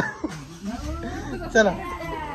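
Several voices overlapping, with high sliding calls, and a short laugh about one and a half seconds in.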